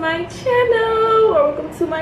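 A young woman's voice singing a short phrase, holding one note for most of a second in the middle.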